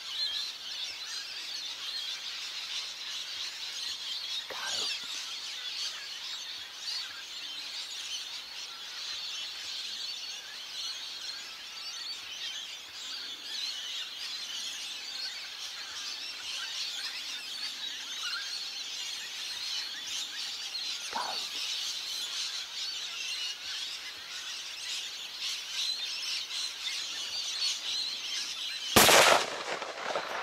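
Birds calling steadily in the background, then, about a second before the end, a single loud shot from a .300 Winchester Magnum hunting rifle.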